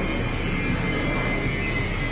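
Steady city street background noise: a low rumble and hum with a faint high steady tone running through it.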